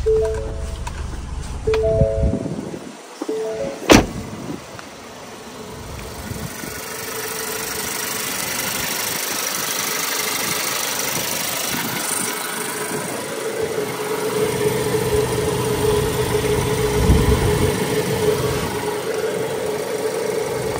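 A 2022 Ford Transit Connect's four-cylinder engine idling steadily, heard at the open engine bay. In the first few seconds a short three-tone chime repeats a few times, and a sharp clack comes about four seconds in.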